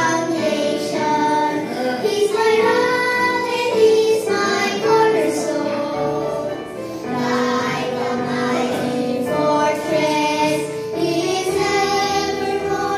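A small group of young girls singing a Christian song together into microphones: "He is my foundation, He's my rock, and He's my cornerstone."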